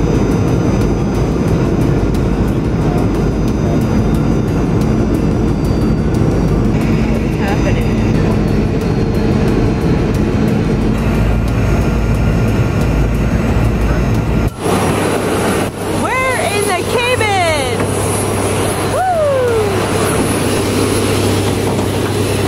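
Steady roar of an airliner in flight, heard from inside the passenger cabin. About fourteen and a half seconds in it cuts abruptly to a different steady engine hum with a thin high whine, and voices over it.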